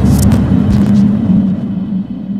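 A loud, deep rumble with a steady low hum running under it, easing off near the end.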